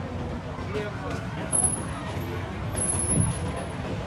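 Street traffic ambience: a steady low rumble of cars and electric scooters passing, with people talking nearby. Two short, very high-pitched squeals sound in the middle.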